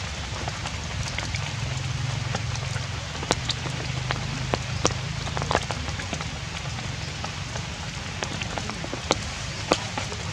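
Steady rain falling, an even hiss with scattered sharp drop clicks.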